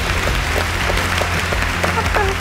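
Studio audience applauding over background music with a steady low bass.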